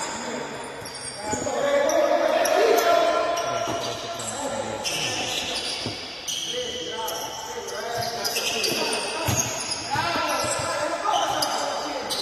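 Futsal ball being kicked and bouncing on a hard indoor court, with short high squeaks of shoes on the floor and players shouting, echoing in a large hall.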